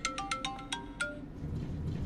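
Mobile phone ringtone playing a quick melody of short notes, which stops about a second in when the call is answered.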